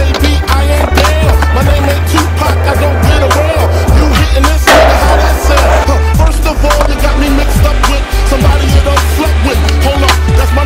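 Hip-hop music with a heavy, steady bass, with skateboard sounds mixed over it: sharp clacks of the board against concrete and a burst of rolling or scraping about five seconds in.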